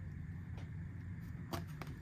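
Quiet room tone with a low hum and a few faint clicks and taps of a blister-carded toy car being handled and set down among other carded cars, mostly near the end.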